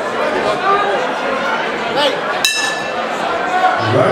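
Boxing-night crowd chattering and shouting in a large reverberant hall, with one sharp metallic ring a little past halfway through.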